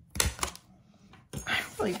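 A small handheld hole punch snapping through two layers of cardstock: a sharp click and a second one about a quarter second later.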